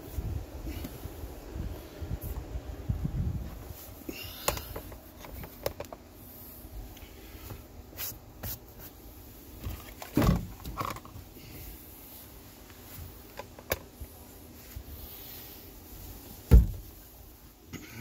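Low wind rumble on the microphone in the first few seconds, then scattered handling clicks and knocks, the loudest a single thump near the end.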